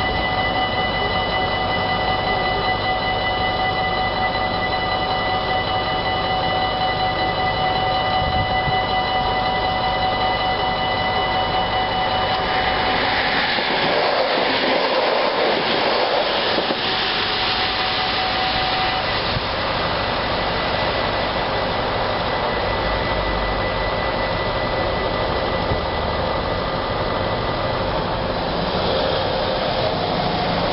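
Level-crossing warning bells ringing steadily, then a yellow NS electric passenger train rushing past about half-way through, loudest for a few seconds before it thins out. The bells keep ringing after the train has gone.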